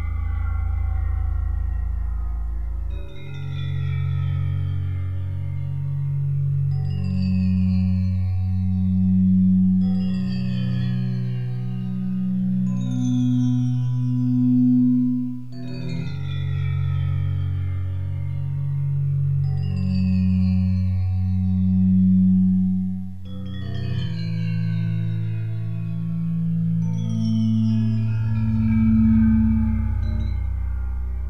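Ambient meditation music made for theta-wave brainwave entrainment. Sustained low drone tones step between notes every few seconds, under high bell-like tones that glide slowly downward and recur about every four seconds.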